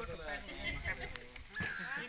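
Voices of a woman and small children, with a high-pitched child's voice held near the end, and a single sharp click about a second in.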